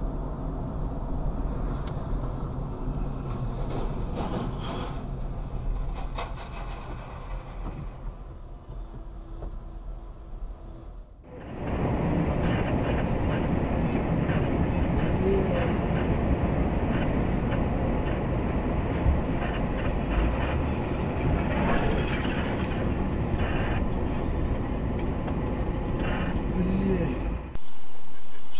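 Steady rumble of engine and road noise inside vehicles on the move, recorded by dashcams. A fairly quiet rumble cuts off about eleven seconds in and is followed by a louder, steady driving rumble on a snowy highway.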